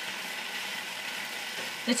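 Stir-fry of broccoli, mushrooms and spinach sizzling steadily in the pan. A voice starts at the very end.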